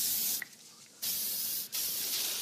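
Aerosol deodorant can spraying in bursts: one stops just after the start, another begins about a second in, and after a brief break a further burst follows.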